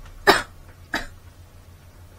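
Two short, sharp bursts of breath from a woman, the first louder, about two-thirds of a second apart.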